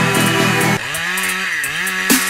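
Background music with a beat, giving way about a second in to a small two-stroke chainsaw running at full throttle; its pitch sags briefly under load in the cut and then picks back up.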